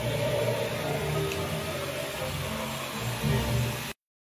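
A handheld hair dryer blowing steadily as a stylist dries a man's hair, under background music. Both cut off suddenly at the very end.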